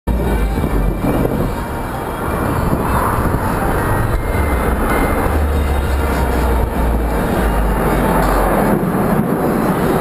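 Loud, steady outdoor din from a large air-show crowd, with music over loudspeakers and a deep fluctuating rumble underneath.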